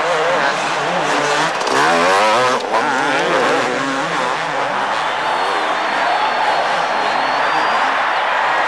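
Two-stroke supercross motorcycle engines racing, their pitch rising and falling in quick waves, busiest about two seconds in.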